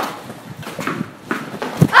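Quick footsteps and sneaker scuffs on brick paving, opening with one sharp knock and followed by a scatter of lighter taps.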